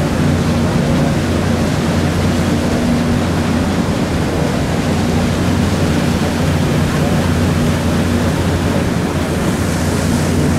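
Steady rush of water churned by a riverboat's stern paddlewheel under way, with a low, even engine hum underneath.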